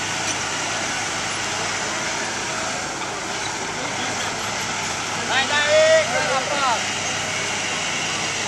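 A truck engine running steadily nearby, with a man's voice calling out briefly a little past the middle.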